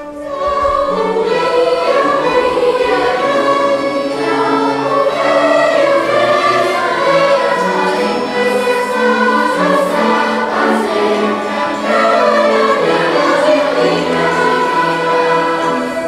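A large children's choir singing with orchestral accompaniment. The voices come in strongly a fraction of a second in and carry on steadily.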